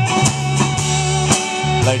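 Country band playing live, the closing instrumental passage: guitars over bass and drum kit with regular drum hits. A man's voice starts to speak right at the end.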